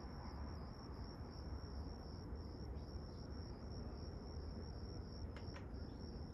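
Crickets chirping steadily in an even, high-pitched pulse over a low background rumble. Two faint clicks come near the end.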